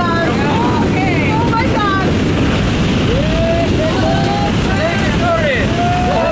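Loud, steady engine and wind noise inside the cabin of a small skydiving aircraft in flight, with voices calling out over it.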